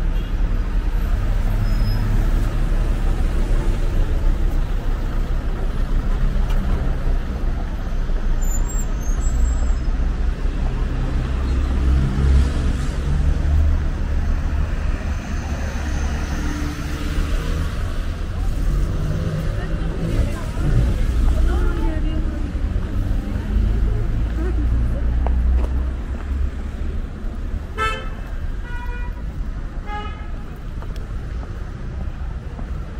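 City street traffic: a bus and cars running past with a continuous low engine rumble that swells twice as vehicles go by, with voices of passers-by. A short horn toot sounds near the end.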